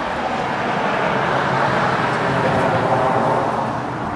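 A car driving past on the street, a steady rush of tyre and engine noise that swells slightly and then eases.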